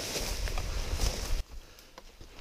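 Footsteps and rustling through ferns and undergrowth, with a low rumble of handling on the microphone. It cuts off abruptly about a second and a half in, leaving quiet with a few faint clicks.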